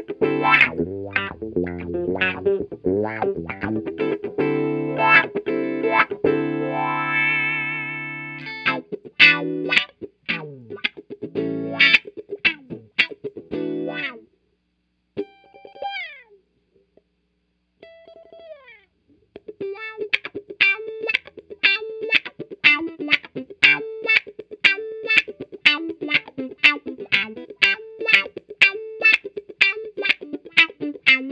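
Electric guitar (Fender American Professional II Stratocaster HSS) played through an Xotic XW-2 wah pedal into a Fender '65 Twin Reverb amp, the foot rocking the wah as it plays held chords and then short stabbed chords. About halfway through there is a pause broken by a couple of falling slides, then fast, even rhythmic strumming through the wah.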